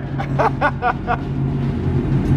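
A car engine idling with a steady low rumble, echoing in a large empty warehouse. A man laughs in short bursts over it during the first second.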